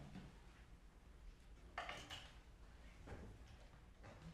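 Near-silent room tone with faint shuffling, once about halfway through and again more faintly about a second later: two pianists settling onto a piano bench.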